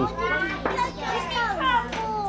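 Speech: children's high voices talking, with a man's voice asking for a letter, over a steady low hum.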